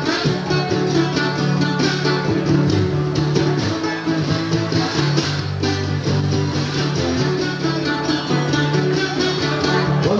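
Solo acoustic guitar playing a Delta blues instrumental passage, fingerpicked: a steady low bass line runs under quick picked treble notes.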